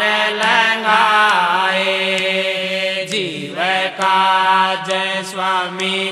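Devotional Hindi aarti sung as a chant, a voice drawing out long wavering notes over a steady low drone, with a downward slide about halfway through.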